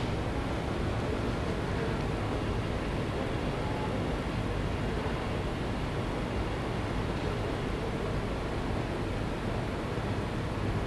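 Steady background room noise with no speech: an even hiss over a constant low rumble, unchanging throughout.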